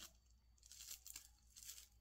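Faint crinkling and tearing of thin plastic wrapping being pulled open by hand to free a small light bulb, a few soft scattered crackles.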